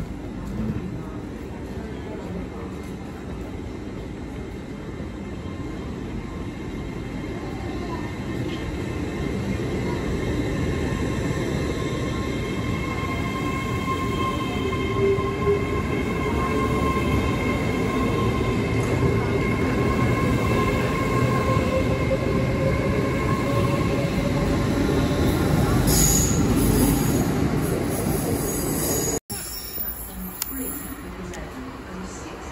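GWR Hitachi Intercity Express Train (Class 80x) moving alongside the platform. Its wheel-and-rail rumble grows steadily louder, with steady electric whines and one whine that slowly rises in pitch. It cuts off abruptly just before the end.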